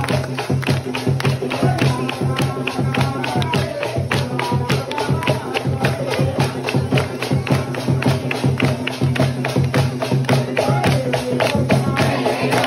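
Loud, fast percussion music with sharp drumbeats at about four to five a second over a steady low drone, with voices over it.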